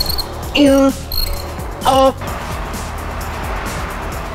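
A man grunting with effort twice, short strained cries of "uh" and "oh" as he struggles through a cable curl, over steady background music.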